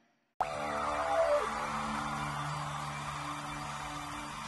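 A moment of silence, then an EDM instrumental track starts suddenly with a sustained chord of steady held tones and a falling glide about a second in.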